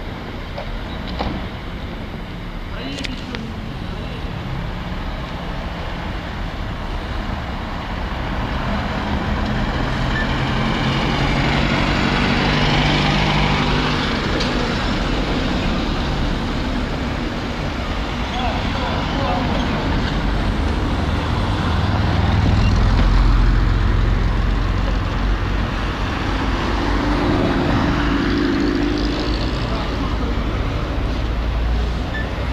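A column of police patrol cars and SUVs driving slowly past one after another, their engine and tyre noise swelling and fading, loudest near the middle and again later on.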